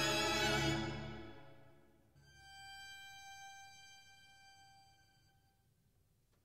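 Closing bars of a chamber-ensemble piece: a held chord over a low bass note fades away over the first two seconds. Then a single high violin note sounds alone for about three seconds and dies away, ending the piece.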